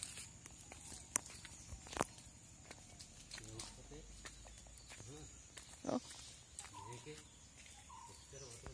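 Barefoot footsteps on wet leaf litter with a few sharp snaps, and several short voice-like calls. The loudest of these comes about six seconds in.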